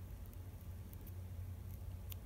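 Faint, scattered ticks of a pen tip dabbing on a paper template over cardboard, marking buttonhole positions, over a steady low hum.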